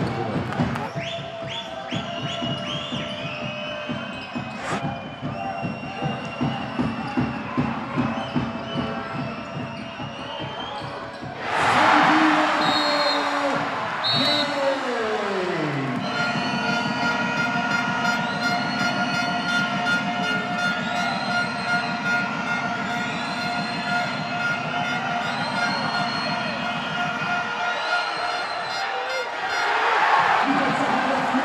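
Basketball game sound on a hardwood court: the ball bouncing as it is dribbled and sneakers squeaking on the floor, over steady arena crowd noise. About twelve seconds in the crowd noise swells suddenly, with a tone sliding downward over a few seconds.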